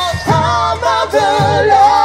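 Live band performing a song: sung vocals with held, bending notes over electric bass, drums and keyboard.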